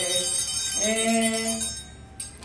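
Two boys singing Greek Christmas carols (kalanta) to struck metal triangles. One note is held in the middle, then the singing stops and the triangle ringing fades near the end.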